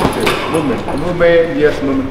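A boxing glove punch lands on a heavy punching bag right at the start, followed by a person talking.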